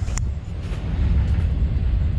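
Low, uneven rumble of wind on the microphone of a camera being carried outdoors, with a single short click just after the start.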